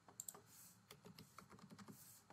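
Faint clicks of a computer keyboard: a short run of keystrokes as a number is typed in.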